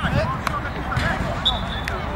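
Football players shouting to each other on the pitch, with the thud of a ball being kicked right at the start.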